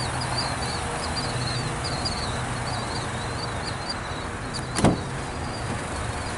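A car door latch clicking open once, sharply, about five seconds in: the driver's door of a 2016 Buick Encore. Under it runs a steady background rumble, with a bird chirping repeatedly until shortly before the click.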